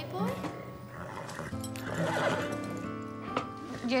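A horse whinnies in its stall near the middle, over soft background music.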